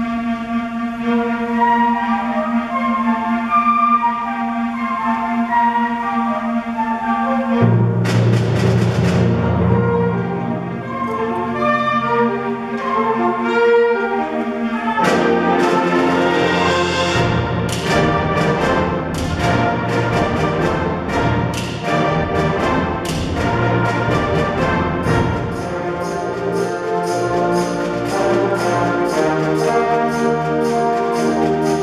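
Concert band playing a medley of Western film themes that features the trombone section, in full brass sound. Held chords under a melody give way to a cymbal crash and heavy low brass about eight seconds in. A second crash about fifteen seconds in brings the full band, with a steady percussion beat through the second half.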